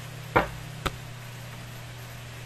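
Two knocks as a deck of tarot cards is handled on a table: a louder, duller one less than half a second in and a sharper click about half a second later.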